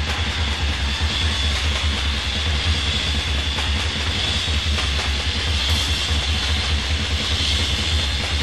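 Hard rock music from a band recording: a dense, steady wall of distorted electric guitar and bass with a held high tone over it.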